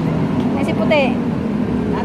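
Steady low hum of a motor vehicle engine running nearby, with a short spoken exclamation about half a second in.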